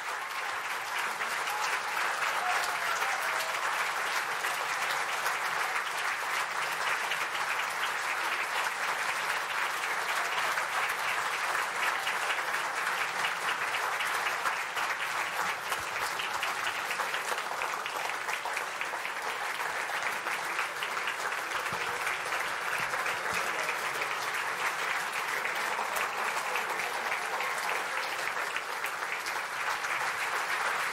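A large crowd applauding: dense, steady clapping.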